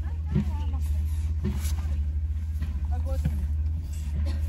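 A car's engine idling, heard inside the cabin as a steady low rumble. Faint voices and small movements sound over it.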